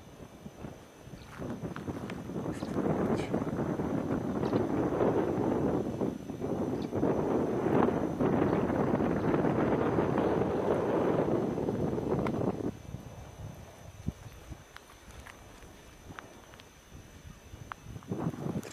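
Footsteps through dry, low steppe scrub close to the microphone, a dense run of rustling steps that stops abruptly about two-thirds of the way through, followed by a quieter stretch with a few faint clicks.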